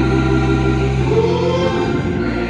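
Gospel singing by two women with organ accompaniment: the organ holds sustained chords while a sung line rises a little after a second in.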